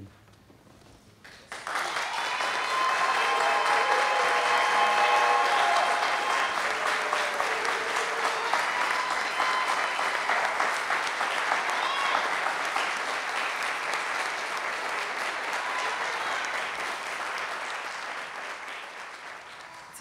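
Congregation applauding, with voices calling out in the first few seconds; the applause starts about a second and a half in and slowly dies away toward the end.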